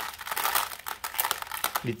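Small white decorative pebbles being tipped and brushed off the top of a bonsai pot, clicking and rattling in a quick irregular patter into a plastic tray.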